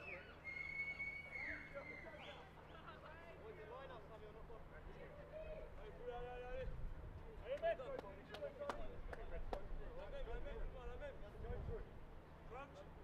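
Players' voices calling across a rugby pitch, heard at field level, with a referee's whistle blown for about a second near the start to stop play. A few sharp claps sound in the second half.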